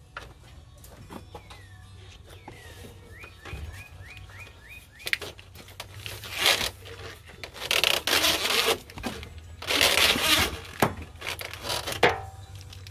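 Corrugated plastic wire loom and its rubber boot being pushed and worked through the opening in a car's door jamb, rubbing against the metal: three long scraping rustles in the second half, with a few sharp clicks.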